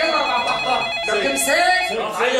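Corded desk telephone ringing, with voices over it.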